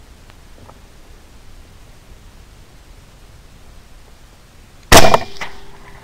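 A single suppressed 6.5 Grendel AR-15 carbine shot about five seconds in: a sudden loud crack with a short ringing tail, followed by a faint steady tone.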